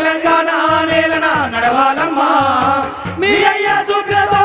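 A group of singers on microphones sings a Telugu folk song in unison through a loudspeaker system, over a drum beaten with a stick in a quick, steady rhythm.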